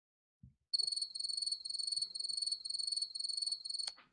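Cricket chirping: a steady, high, rapidly pulsing trill that starts under a second in and cuts off suddenly just before the end.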